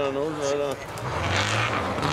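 A man's drawn-out shout over a rally car's engine. About a second in, the Subaru Impreza rally car's flat-four comes in loud as the car slides past close by on the snow, with a dense rush of noise from its tyres.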